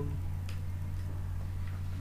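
Steady low hum with one sharp click about half a second in and a couple of fainter ticks after it.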